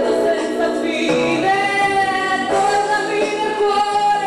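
A woman singing into a microphone, holding one long note through the second half, with musical accompaniment underneath.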